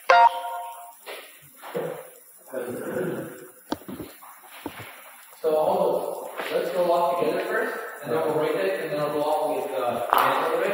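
Unintelligible voices in short bursts, then continuous, denser talking from about five and a half seconds in.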